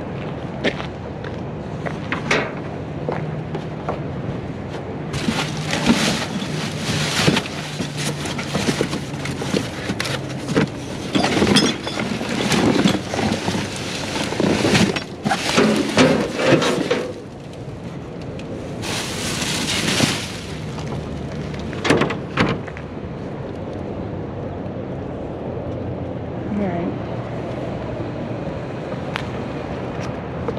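Rummaging through a steel dumpster: cardboard boxes and plastic bags rustling and crinkling, with repeated knocks and bumps, busiest through the middle stretch. A steady low hum runs underneath.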